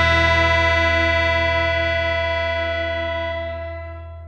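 The band's final chord, electric guitar and bass among it, held and ringing out, slowly fading away as the song ends.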